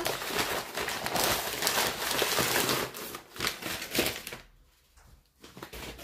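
Brown kraft packing paper being crumpled and rustled by hand while a parcel is unwrapped. The crinkling is dense for the first three seconds, thins to scattered crackles, and goes almost quiet for a moment shortly before the end.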